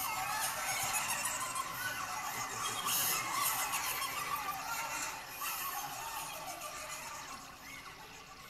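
Ambient new-age electronic music played live: wavering, gliding high tones over a steady hiss, fading toward the end.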